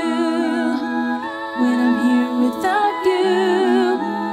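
Layered a cappella vocals: one female singer multitracked into several parts, singing wordless held chords in place of the song's instruments. A low vocal bass line steps between notes beneath sustained upper harmonies, some with vibrato.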